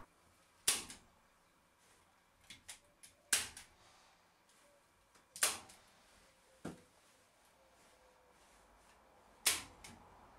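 A staple gun driving staples through insulation into timber rafters: four sharp snaps a few seconds apart, with a few fainter clicks between them.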